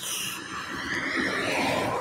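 A car driving past close by on the road: its tyre and road noise swells over about the first second and stays loud as it goes by.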